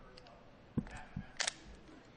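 A few short clicks and knocks over faint room noise: a low thump just under a second in, another a little later, and a sharper click about a second and a half in.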